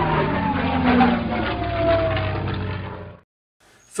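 Intro sound effect: an engine-like rumble with a tone falling in pitch, cutting off suddenly about three seconds in.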